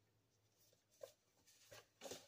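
Faint rustling of paper notes being handled in the hands, with a brief crinkle about a second in and another near the end, against near silence.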